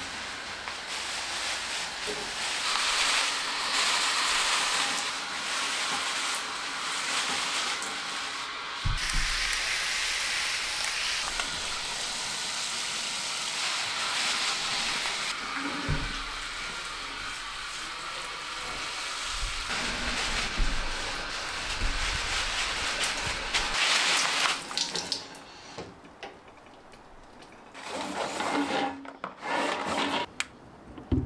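Water spraying from a hand-held hose nozzle onto potted trees and their mulch. It is a steady hiss that changes as the spray moves, and it stops about 25 seconds in, followed by a few clicks and knocks.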